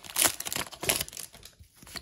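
Foil wrapper of a Pokémon trading-card booster pack being torn open and crinkled by hand, in a quick run of short crackling rips over the first second or so that thin out near the end.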